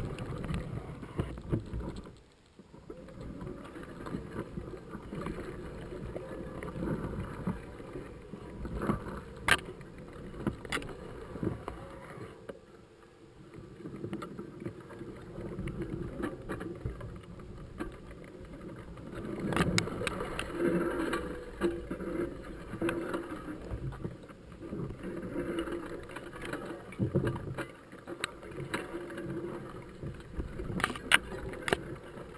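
Mountain bike ridden along a dirt singletrack through tall grass: grass swishing against the bike and rider, with frequent knocks and rattles from the bike over bumps. It goes briefly quieter twice, about two seconds in and near the middle.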